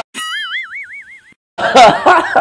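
Cartoon 'boing' sound effect: a springy tone that glides up, then wobbles in pitch about six times a second for about a second before stopping. Louder laughter from a man breaks in near the end.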